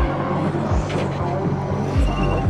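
A drift car's engine running steadily, a low, even hum.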